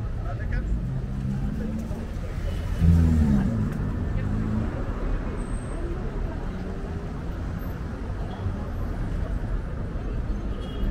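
City street traffic, with cars running along the road beside the sidewalk as a steady rumble. A louder vehicle sound swells briefly about three seconds in, and people talk nearby.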